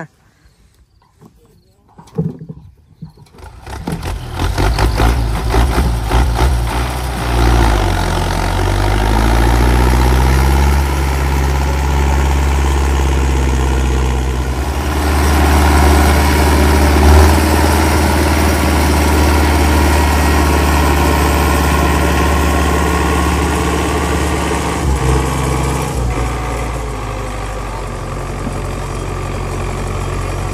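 Belarus 1052 tractor's diesel engine starting up about three seconds in, revving up over the next few seconds, then running steadily at high revs before dropping back to a lower speed a few seconds before the end.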